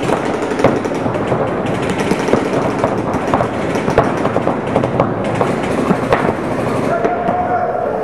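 Paintball markers firing, many sharp pops in quick succession, over people's voices.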